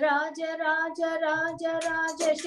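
A woman singing a devotional bhajan solo, in short syllables on a few steady notes, heard over a video call.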